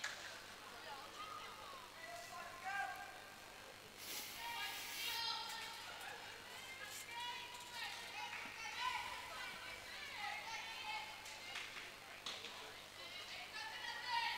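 Faint, high voices of players calling out across an indoor sports hall, with a short noisy burst about four seconds in.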